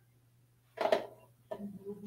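A short spoken sound, a brief word or exclamation, about a second in, and softer voice sounds near the end, over a steady faint low hum.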